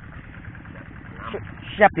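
A farm tractor's engine running steadily as a low rumble under the scene, with a short spoken phrase near the end.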